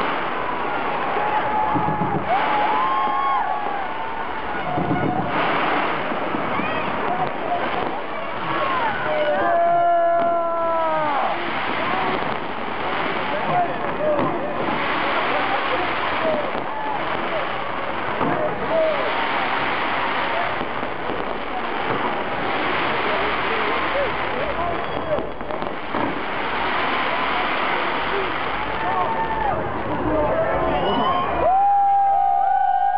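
A fireworks display going off in a steady barrage of bangs and crackles, with a crowd cheering and whooping over it throughout; one loud whoop rises and falls about a third of the way in.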